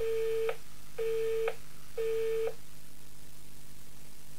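Telephone busy tone after a recorded phone message: three identical beeps, each about half a second long, one a second, marking the line hung up.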